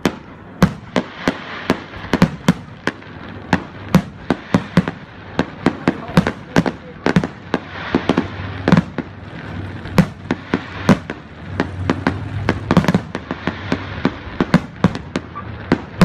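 Fireworks going off: an irregular string of sharp bangs and crackles, several a second, over a steady low background.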